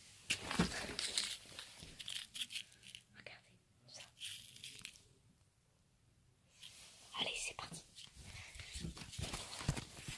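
Crinkly plastic sweets packet being handled, giving short scattered rustles and crinkles, with a pause of near silence in the middle.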